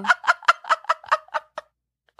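A woman laughing in a quick run of short rhythmic ha-ha pulses, about five a second, that fade out and stop about one and a half seconds in.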